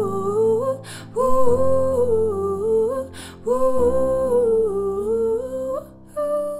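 A woman's voice singing wordless "ooh" phrases in a wavering, repeated melody close to the microphone, over sustained low accompaniment chords. She takes a quick breath twice between phrases.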